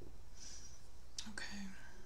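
A woman whispering softly under her breath, ending in a short, low murmur.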